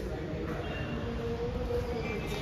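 John Deere 5075E tractor's CRDI diesel engine idling steadily, a low even rumble.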